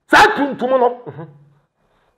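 A man's voice saying one short, emphatic phrase that ends about a second and a half in.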